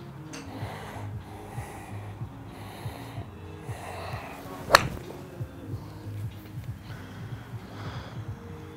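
Single sharp crack of an iron club striking a golf ball off a driving-range hitting mat, about three-quarters of a second after the backswing, over steady background music.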